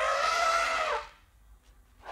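Elephant trumpeting: one call about a second long that starts suddenly and drops slightly in pitch as it ends.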